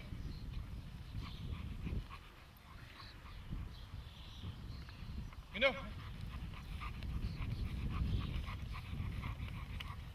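Doberman panting as it heels beside its handler, over a low rumble. About halfway through comes the loudest sound, a single short spoken command from the handler.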